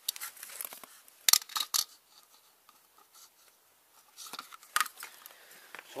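A hydraulic trolley jack being worked to raise the engine, with sharp metallic clicks and clanks in irregular groups, the loudest cluster about a second in and more near the end.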